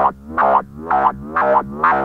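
Korg MS-20 analogue synthesizer playing an envelope-driven loop of short notes, about two a second, each gliding down in pitch with a snappy, resonant filter sound. No sequencer is involved: the loop comes from the synth's ESP and EG1 envelope, which also sets the pitch bend.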